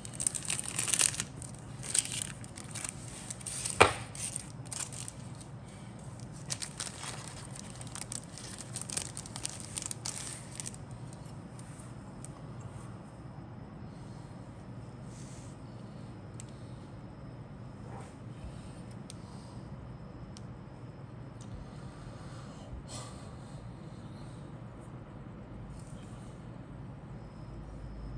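Thin clear plastic bag crinkling and tearing as it is slit open with a hobby knife and the clear parts sprue is pulled out, with one sharp snap about four seconds in. After about eleven seconds only faint, occasional handling rustles remain.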